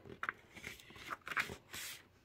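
Paper handling on a glued notepad block: light rustles and small clicks of the sheets under the hand, with a brief scraping rustle near the end as the protective paper sheet is worked loose.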